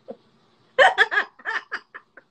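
A woman laughing in a run of short, breathy bursts that start a little under a second in, after a brief pause.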